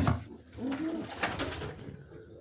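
Domestic pigeon cooing: a low call that rises and falls, starting about half a second in, with a few quick clicks shortly after.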